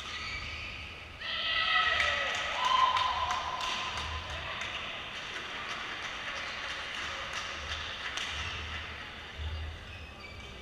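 Players' shouts as a badminton rally ends, followed by a run of hand claps at a few per second that fades out over several seconds.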